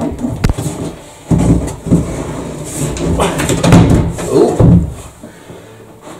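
A large plywood box knocking and scraping against wooden cabinetry as it is manhandled down into a boat's bilge. A man's straining voice, without words, is heard in the middle of it.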